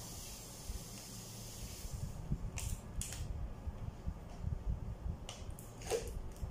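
Drinking from a small plastic water bottle: a hissing suck for the first couple of seconds, then a few short, sharp clicks and crinkles of the thin plastic.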